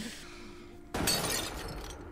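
A sudden crashing, shattering noise from the anime's soundtrack about a second in, fading away over the next second, after a faint steady low tone.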